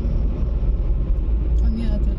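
Steady low rumble of road noise inside a moving car's cabin.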